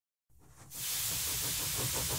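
Steam hissing as the soundtrack opens: it fades in during the first second, then holds steady with a low rumble underneath.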